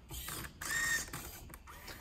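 Servo motors of an Otvinta 3D-printed Rubik's Cube solving robot whining through one gripper move lasting under a second, followed by a brief click, as the robot works through its solving moves.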